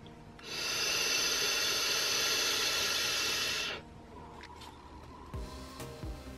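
A single draw of about three seconds on a mini vape mod and tank: a steady hiss of air pulled through the wide-open airflow as the ceramic coil fires, stopping abruptly when the draw ends.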